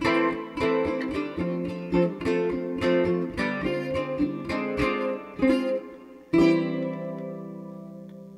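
Kala eight-string baritone ukulele picked in a quick run of notes, then a final chord struck about six seconds in and left to ring out, fading away.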